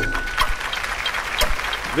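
Studio audience clapping, with a steady high electronic tone from a game-show sound effect ending about half a second in.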